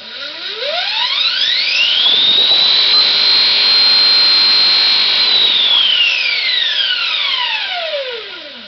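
Electric motorcycle drive motor spinning up with no load at 72 volts: a loud whine rises in pitch for about two and a half seconds, holds high and steady for about two seconds, then falls steadily as the motor winds down.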